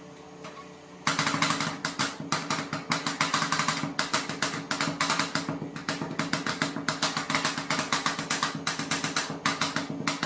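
Two steel spatulas chopping rapidly against a stainless steel cold plate. The fast, many-strokes-a-second metal clatter starts suddenly about a second in and keeps going, over a steady low hum.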